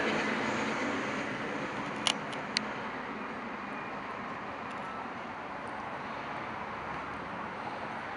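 Steady outdoor background noise of distant traffic, with a few sharp clicks about two seconds in, the last about half a second later.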